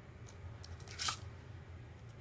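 Plastic Blu-ray case being handled, with faint clicks and one louder short plastic rustle about a second in as its hinged inner disc tray is turned over.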